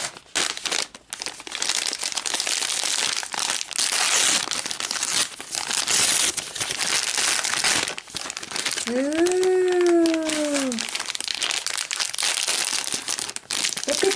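Paper and clear plastic packaging crinkling and rustling as a bag of miniature toys is rummaged through and handled. About nine seconds in, a single drawn-out vocal sound rises and then falls in pitch, lasting about two seconds.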